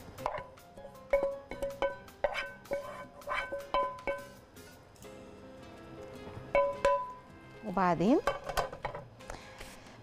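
A spatula scraping and knocking stir-fried vegetables out of a frying pan into a glass bowl: a quick run of clinks and knocks, each with a short ring, thinning out after about four seconds, with one more knock near seven seconds. Soft background music runs underneath.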